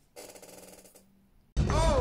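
A brief, faint buzzing with a steady stack of tones for under a second. Then, about a second and a half in, a loud voice cuts in, swooping up and down in pitch.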